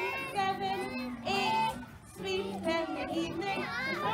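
Young children singing a song together over recorded musical accompaniment.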